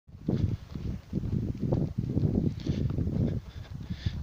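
Footsteps on a gravel road at a walking pace, a string of irregular low, noisy steps about two to three a second.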